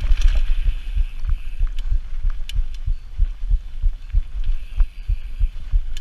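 Mountain bike descending a gravel trail, heard from a body-mounted action camera: irregular low thumps several times a second from wind buffeting and trail jolts on the camera, over a hiss of tyres on loose gravel, with a few sharp clicks from the bike.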